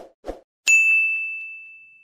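A single high, bell-like ding sound effect: one sudden strike with one clear ringing tone that fades away over about a second and a half.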